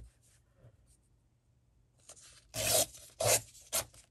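Paper torn along a ruler's edge in three short rips: a longer one about two and a half seconds in, then two quick ones within the next second.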